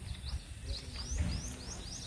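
A small bird calling repeatedly, short high chirps that sweep upward, about three a second, over a low outdoor rumble.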